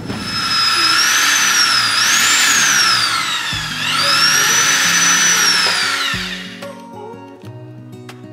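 Corded electric drill running, its motor whine dipping in pitch twice and climbing back, then stopping shortly before the end. Acoustic guitar music comes in about halfway and plays on after the drill stops.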